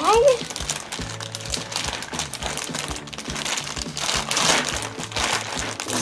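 Plastic zip-top bags crinkling and rustling as a small bag is pushed back down into a larger bag of ice, with louder bursts of crinkling around four to five seconds in.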